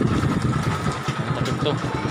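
Motorcycle engine running steadily under a man's singing voice.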